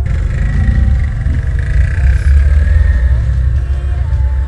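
Steady low wind rumble over the microphone of a moving Honda Pop 110i, with the bike's small single-cylinder four-stroke engine running underneath at road speed.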